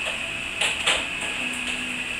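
A child's plastic kick scooter rolling over a tiled floor, its small wheels making a steady mechanical noise, with a couple of light knocks before the middle.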